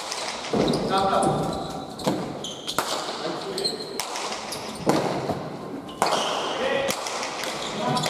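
Basque pelota rally: the hard ball is struck and rebounds off the walls and floor, giving sharp smacks at uneven intervals, roughly one a second, each ringing on in the large indoor court.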